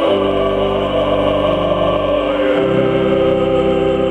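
Male solo voice singing a slow hymn in Russian to pipe organ accompaniment, held notes with vibrato over sustained organ chords. The organ's bass moves to a new chord about two and a half seconds in.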